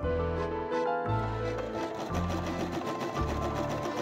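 Electric domestic sewing machine stitching a pinned seam, its needle running in a rapid, even rhythm of ticks. Background music with a pulsing bass line plays over it.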